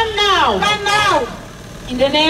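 A woman's voice through a microphone and PA, in long rising and falling phrases, with a short pause about a second and a half in.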